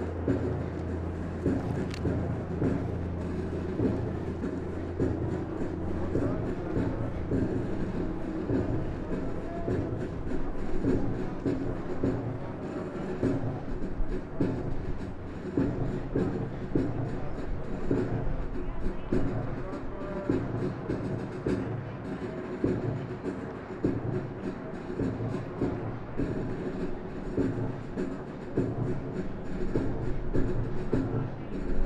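Many boots marching in step on a concrete parade ground, a steady continuous clatter of overlapping footfalls from a formation of trainees.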